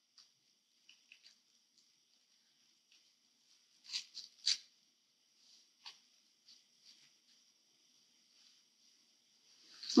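Quiet handling noise of a sheer ribbon being knotted by hand: soft rustles and a few short crinkles, the loudest about four and four and a half seconds in, over a faint steady hiss.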